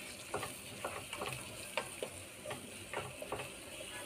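Onion and spice masala frying in oil in a pan, sizzling softly, while a spatula stirs it with short irregular scraping strokes against the pan, about two or three a second.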